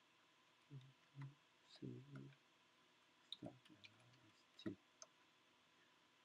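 A few faint computer-keyboard keystrokes as a terminal command is typed and entered, with short low vocal murmurs in the first two seconds.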